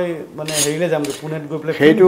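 Metal kitchen utensils and dishes clinking during cooking, under a person's voice that carries on through the moment.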